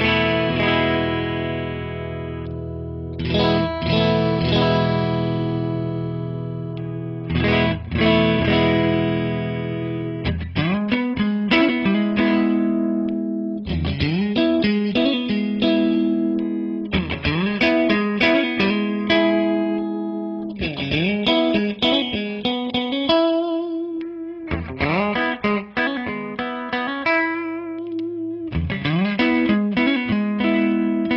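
Fender American Standard Stratocaster with stock pickups, played through the clean channel of a Fender Hot Rod Deluxe III tube combo with a Celestion speaker. First come three long chords, each left to ring for three or four seconds. From about ten seconds in it changes to a quicker rhythmic pattern of picked chords and arpeggios.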